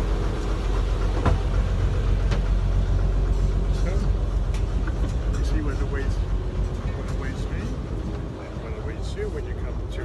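A houseboat's engine runs with a steady low hum that eases somewhat about eight seconds in.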